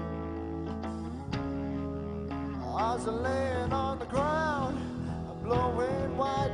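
Live rock band playing, guitar-led, over sustained bass notes; a wavering melodic line comes in about three seconds in.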